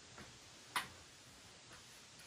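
A single sharp click a little under a second in, over quiet room tone.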